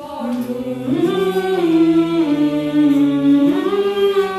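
Small group of young voices singing a cappella without words, holding long notes in several parts at once. The chord fills out about a second in and shifts upward near the end.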